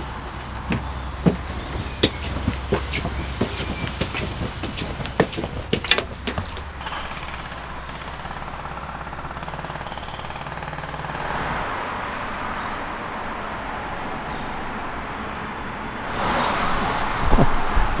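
Road traffic on a main road, a steady hum of passing cars that swells around the middle and louder near the end. Through the first several seconds, a run of sharp clicks and knocks.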